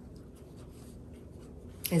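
Faint rustling and scratching of paper cut-out hearts being handled.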